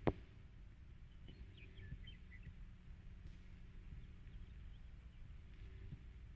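A single sharp click right at the start, then a quiet old-film soundtrack with steady low hum and hiss, and a few faint short high chirps about a second and a half in.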